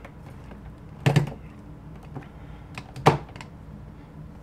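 Two sharp knocks about two seconds apart, with a few lighter ticks between them: hands gripping and moving a plastic action figure to turn it around.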